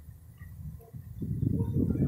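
Low rumbling flutter of wind buffeting a phone microphone, faint at first and swelling loud about a second in.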